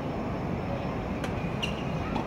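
Steady low rumble of urban outdoor background noise, traffic-like, with a couple of faint ticks in the second half and no distinct loud hits.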